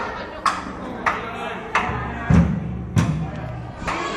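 A small child hitting a drum kit with sticks: separate, uneven strikes about every two-thirds of a second, two of them near the middle with a deep low boom from a drum.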